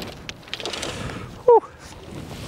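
A man's short, falling 'ooh' exclamation about one and a half seconds in, over low outdoor background noise.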